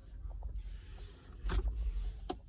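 Low rumble of a handheld phone being moved, with one sharp click about one and a half seconds in.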